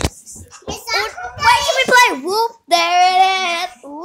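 A young child's high voice calling out in long, sliding, wordless sounds, swooping down in pitch and then holding one steady note for about a second near the end.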